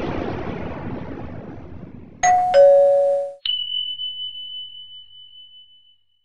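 Intro sound effects: the tail of a deep boom dying away, then a two-note ding-dong chime, high note then low, a little over two seconds in. A click follows, then a single high steady tone held for about two and a half seconds as it fades out.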